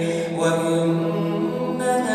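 A male voice reciting the Quran in a slow, melodic chant, holding a long drawn-out note that moves to a new pitch about half a second in.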